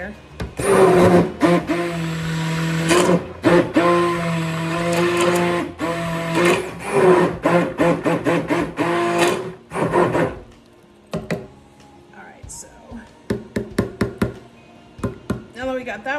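Immersion (stick) blender run in short pulses in a plastic container of soaping oils to disperse rhassoul clay, its motor whine starting and stopping with each burst for about ten seconds. Then a quick series of light knocks.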